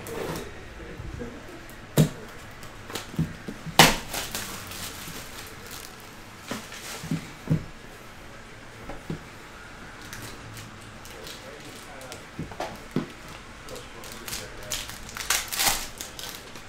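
Plastic shrink wrap being slit and peeled off a cardboard trading-card box, with scattered knocks as the box is handled, the loudest a little before four seconds in. Near the end comes a dense crackly crinkling of a foil card pack.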